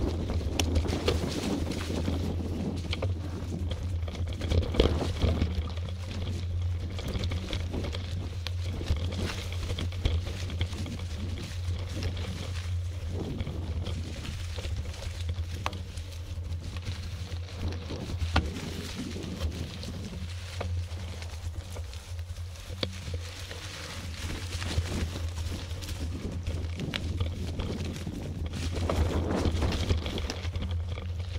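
Mountain bike rolling along a trail covered in dry fallen leaves: tyres crunching through the leaves, with many small knocks and rattles from the bike over a steady low hum.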